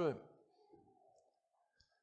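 A man's voice ends a word and fades into the hall's reverberation, then near silence with a faint click about three-quarters of a second in.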